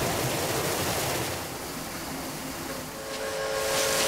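Steady hiss of water spraying from a center-pivot irrigation line's sprinklers, getting louder near the end. A steady hum joins about three seconds in.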